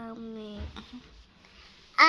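A drawn-out vocal note, a person's voice held on one steady, slightly falling pitch, that stops about half a second in; then quiet with a soft low thump.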